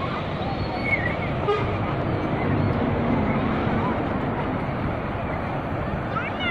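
Ocean surf breaking and washing up the beach, with distant shouts and chatter of bathers over it. A faint low hum comes in for a second or so in the middle.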